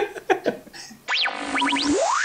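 Laughter trailing off, then about a second in a synthesized transition sound effect starts suddenly: quick pitch glides up and down over a held low tone, ending in a fast rising sweep.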